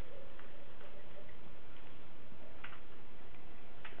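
Steady hiss of room tone and microphone noise, with two faint clicks, one a little before three seconds in and one just before the end.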